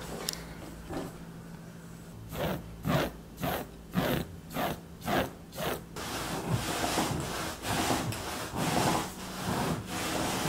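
Razor scraped across a fabric couch cushion to shave off pilling, in short rasping strokes about two a second. Near the middle the strokes give way to a denser, continuous rubbing.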